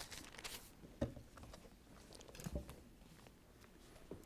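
Faint rustling of thin Bible pages being turned, with a few soft handling knocks: one about a second in and another about two and a half seconds in.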